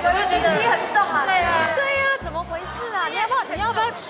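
Several people talking over one another, with background music and its bass notes underneath.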